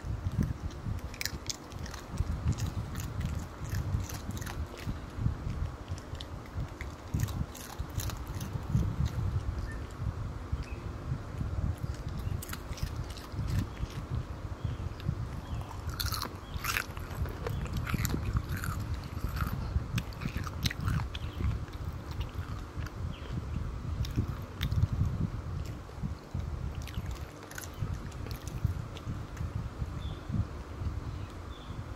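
A small dog eating pieces of bacon sandwich close to the microphone, with repeated bites, chewing and jaw clicks throughout and a low rumble underneath.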